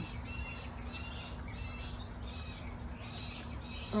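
Small birds chirping in the background, short high chirps repeating throughout, over a steady low hum.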